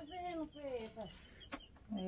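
Chickens clucking: a few short downward-gliding calls in the first second, with a sharp click about a second and a half in.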